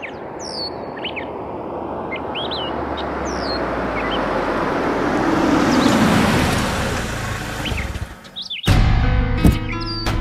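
Cars driving in slowly, their tyre and engine noise swelling to its loudest about six seconds in and then fading, with birds chirping. Music starts suddenly near the end.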